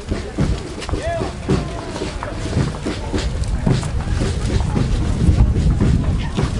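Indistinct chatter of a crowd of people walking past, with voices overlapping, over a low rumble of wind on the microphone.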